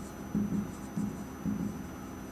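Marker pen writing on a whiteboard in about four short, separate strokes.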